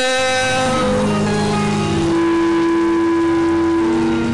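Slow background worship music of long held chords, each chord changing every second or so, with no singing.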